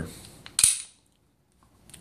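A single sharp metallic snap about half a second in, ringing briefly: a Glock 19's slide snapping forward after a chamber check.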